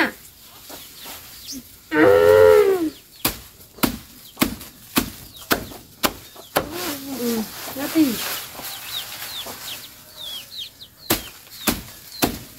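A machete chopping through bundles of leafy green fodder grass: a run of sharp, separate chops about one or two a second from about three seconds in. A short voiced sound comes just before the chopping starts, and brief high chirps sound between the chops.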